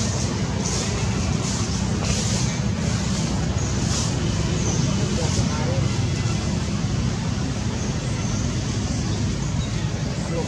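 Steady low rumbling background noise with a hiss over it, unbroken and without distinct events.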